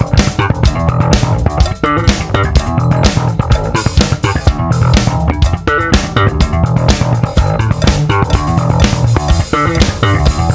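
Funk band playing an instrumental passage: a busy electric bass line to the fore over a drum kit.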